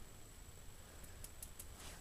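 Very quiet room tone in a small room, with a few faint ticks about a second in.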